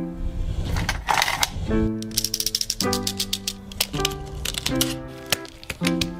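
Background music of held chords, over which comes rapid, dense clicking and crackling from plastic and bubble-wrap packaging being handled and cut open. The clicking comes in two runs, one about two seconds in and another from about four and a half seconds.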